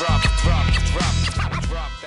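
Hip hop track with a heavy bass beat and repeated record-scratch sweeps over it.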